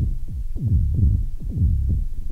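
Make Noise Eurorack modular synthesizer playing sequenced low drum hits shaped with MATHS, each a kick-like thump whose pitch falls quickly, several a second in an uneven pattern, somewhere between percussion and a bass line.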